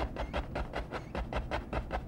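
A two-inch brush tapped rapidly against a canvas loaded with wet oil paint, a steady run of soft knocks about five a second, blending the base of the trees into mist.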